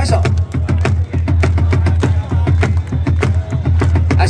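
Stadium cheer music played over loudspeakers, with a heavy bass and a steady drum beat.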